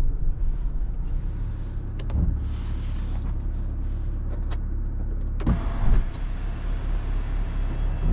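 Electric sunroof motor of a 2019 Subaru Forester running, worked from the overhead console switch. It sounds over the low cabin rumble of the car rolling slowly on a rough dirt track, with a few clicks and knocks from the uneven ground.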